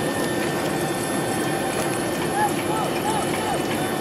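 Distant voices shouting encouragement, several short calls in the second half, over a steady background rumble with a constant low hum.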